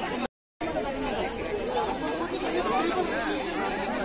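Several people talking at once, their voices overlapping. The sound cuts to silence for a moment just after the start.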